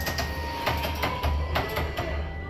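Soundtrack of a simulated train-carriage ride: a steady low rumble with a few sharp knocks and faint music-like tones.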